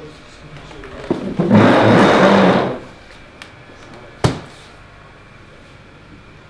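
A man's loud, rasping shout lasting about a second and a half, then a single sharp knock a couple of seconds later.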